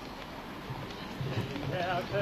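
Quiet murmur and shuffling of a gathered outdoor crowd, then a crowd of voices starts singing a song together about a second and a half in, swelling at the end.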